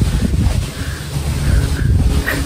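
Wind buffeting the microphone as the spinning playground ride whirls round, a loud, gusty low rumble.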